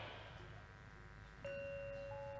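Faint pause, then about one and a half seconds in a single metal gamelan note is struck and rings on steadily at one pitch.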